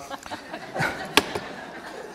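A hard-boiled egg being handled at a small metal bucket of cold water: faint handling noise and one sharp click about a second in.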